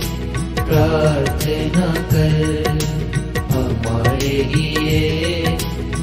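Instrumental music of a Hindi devotional song: a melody line over a steady percussion beat, with no recognised lyrics.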